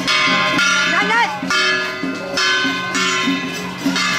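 Procession percussion: small brass hand gongs struck in a steady beat, each stroke ringing on. A short rising-and-falling pitched call, a voice or a wind instrument, cuts across about a second in.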